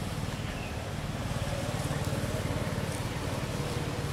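A motor vehicle's engine running steadily as a low hum, growing a little louder around the middle.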